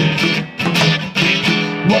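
Acoustic guitar strummed in a blues rhythm, several chord strokes between sung lines. A man's voice comes back in on "Well" at the very end.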